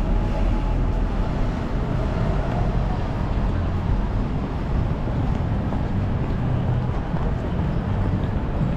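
Busy city street ambience: steady road-traffic noise with a deep low rumble.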